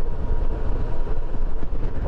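Steady wind rush on the microphone mixed with the running engine and road noise of a 2020 Suzuki V-Strom 650 motorcycle at road speed.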